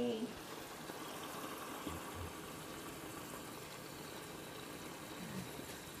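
Quiet room tone: a steady low hiss throughout, with faint, brief voice sounds about two seconds in and again a little after five seconds.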